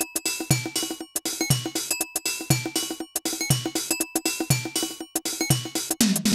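Korg Electribe SX sampler playing a looped drum-machine pattern, recorded straight from its output without effects: a low kick that drops in pitch about once a second, quick sharp hits between, and a repeating short pitched note.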